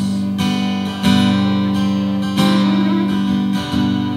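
Gibson Southern Jumbo acoustic guitar strumming chords that ring on, with a new strum roughly every second and a half.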